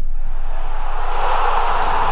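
A whoosh sound effect: a rush of noise that swells over the first second and then holds, with a low steady hum underneath.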